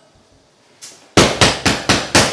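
A hand banging rapidly on an apartment door, a quick run of loud knocks, about six a second, starting about a second in after a near-silent pause.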